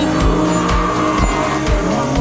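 Background music with a steady bass beat, about two beats a second, over a drift car's engine revving and its tyres squealing as it slides.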